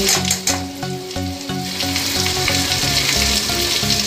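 Spiced onion masala frying in mustard oil in a kadai, sizzling steadily. A metal spatula scrapes and knocks against the pan in the first half second as the spices go in.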